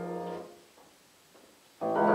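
Freshly tuned Pleyel piano: a held chord fades and is released about half a second in, then after a pause of over a second a new chord is struck near the end.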